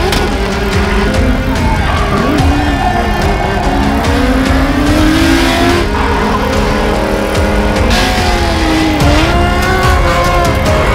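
Drift cars' engines revving up and down as they slide sideways, with tyre squeal, over background music.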